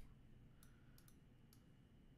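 Near silence, with a few faint clicks of computer keys about half a second to a second in.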